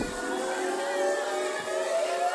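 A comic sound effect: one long tone sliding slowly and steadily upward in pitch.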